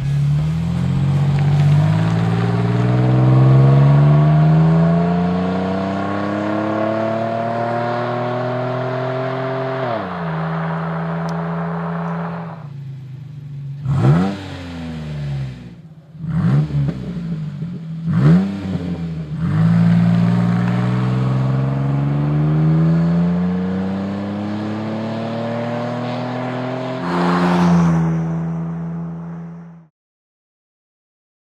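Jeep Wrangler's V6 through a Flowmaster American Thunder cat-back exhaust with an HP2 muffler, accelerating with the exhaust note rising steadily, then dropping at a gear change about ten seconds in. Through the middle come several quick revs, then another long pull with a second shift near the end.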